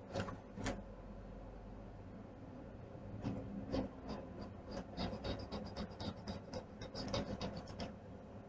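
Coloring strokes scratching on paper: two quick strokes at the start, then from a few seconds in a fast run of short back-and-forth strokes.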